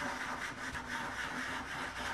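White soft pastel stick rubbing and scratching across paper in short strokes, with a faint steady hum beneath.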